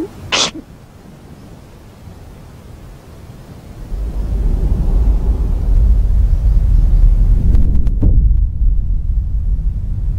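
A short, sharp breath, then a deep, loud rumble that swells in about four seconds in and holds.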